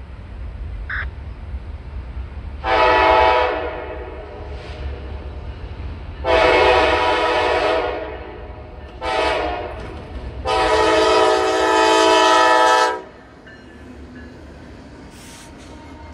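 Norfolk Southern diesel freight locomotive's air horn sounding the grade-crossing signal: two long blasts, a short one and a final long one, over the steady low rumble of the approaching locomotives.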